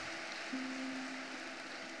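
Audience applauding, faint and even, under soft background music that holds a low note from about half a second in.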